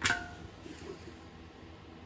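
Strong-hold paintless dent repair glue sticks popping off the metal fuel tank of a 1982 Honda ATC 185S as they are pulled: one sharp pop with a brief metallic ring that dies within about half a second. The glue had not held, leaving the dent unpulled.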